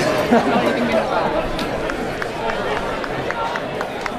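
Indistinct voices of spectators and players talking and calling out across an open football ground. A run of light, quick taps, a few a second, comes in the second half.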